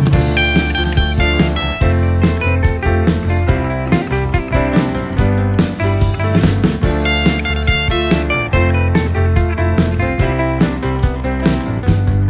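Rock band playing an instrumental break: a lead guitar melody over bass guitar and a drum kit, with no vocals.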